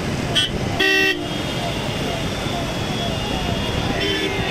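A vehicle horn toots briefly about a second in, over the steady noise of motorcycles and a car moving in a slow convoy, with people's voices mixed in.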